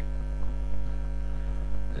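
Steady electrical mains hum: a low, unchanging drone with a stack of overtones.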